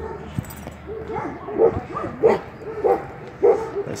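A dog barking repeatedly, short barks coming about every half second or so from about a second in.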